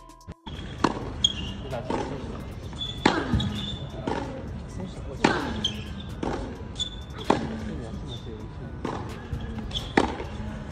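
Tennis balls struck hard by a racket in a practice rally on a hard court, a sharp pop about every two seconds, with quieter ball bounces in between.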